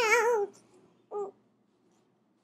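A small girl's high-pitched, wavering vocal sound, ending about half a second in, followed by a short, higher squeak just after a second in.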